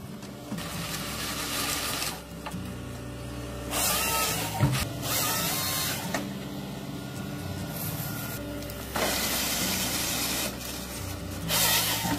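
Forestry harvester at work: the Volvo tracked excavator's engine and hydraulics run steadily, broken several times by spells of harsher noise as the Nisula 555C harvester head grips and cuts trees.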